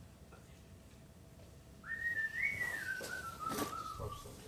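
A person whistling one drawn-out note that starts about two seconds in, rises, then slowly falls in pitch. A light click comes near the end.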